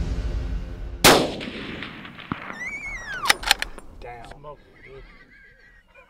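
A single shot from a Benelli Lupo bolt-action rifle in .300 Winchester Magnum about a second in, the loudest sound, ringing out as it echoes away. About two seconds later a high whinny-like call falls in pitch, followed by two sharp clicks and soft low voices.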